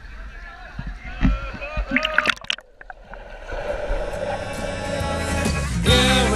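Echoing voices and water sloshing in an indoor swimming pool, with low knocks close to the microphone. About halfway through, background pop music fades in and grows steadily louder.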